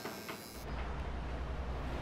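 Faint room tone, then about half a second in a steady low outdoor rumble takes over and runs on evenly.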